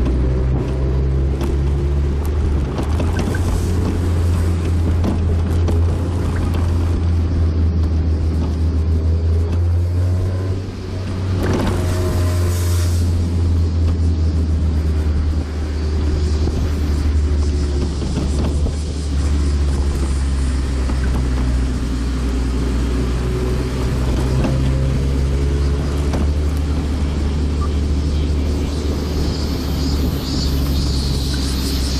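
Mazda NB Roadster's four-cylinder engine running at a steady cruise, heard from inside the open-top cabin together with tyre and wind noise. The level dips briefly twice, about a third of the way and halfway through.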